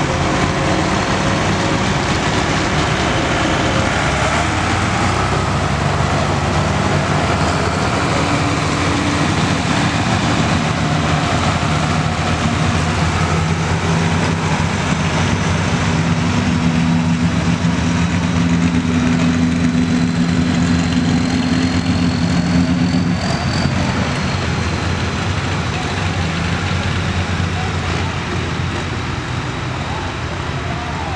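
John Deere farm tractor's engine working under heavy load as it drags a weight-transfer sled down a pulling track, the engine note holding steady and climbing through most of the pull, then falling away about three-quarters of the way through as the pull ends.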